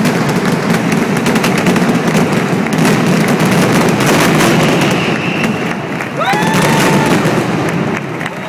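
Mascletà finale: a dense, continuous barrage of firecracker and aerial bangs merging into one loud rattle. About six seconds in a voice cheers over the barrage.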